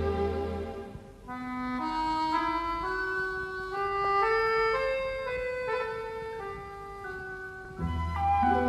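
Orchestral easy-listening music. A full chord dies away about a second in, and a single solo instrument plays a slow melody alone, climbing note by note, then falling back to a long held note. The full orchestra comes back in right at the end.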